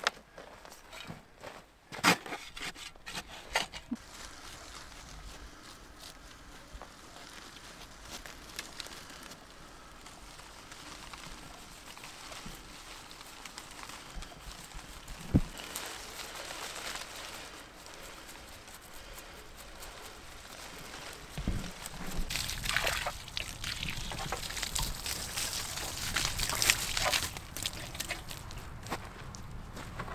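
Hand digging and planting: a spade scraping and soil being tipped and handled, with a few clicks early on, one sharp knock about halfway through, and a longer stretch of louder scraping and rustling in the second half.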